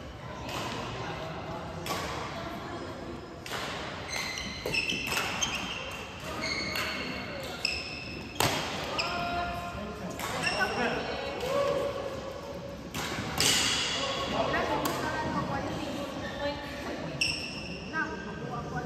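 Badminton rally: sharp racket strikes on the shuttlecock about every second or so, mixed with short high-pitched squeaks of players' court shoes on the floor.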